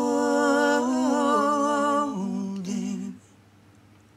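Voices holding one long sung note, close to a hum and with no instruments heard. The pitch steps down twice, then the note stops about three seconds in.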